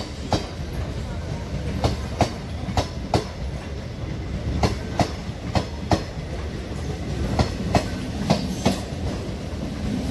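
Engine-less multiple-unit passenger train running past at speed: a steady wheel-on-rail rumble with a sharp clickety-clack as the wheels cross rail joints. The clicks come in pairs about a third of a second apart, a pair every second or so.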